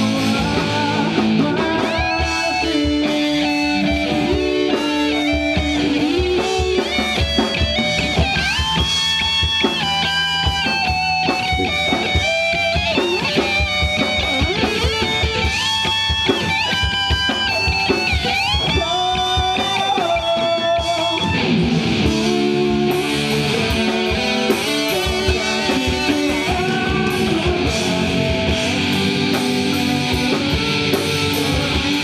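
Live rock band playing: an electric guitar lead of sustained, bending notes over drums, changing about twenty seconds in to a denser, chord-driven section.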